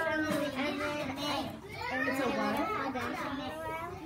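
Young children's voices talking and chattering over one another without pause.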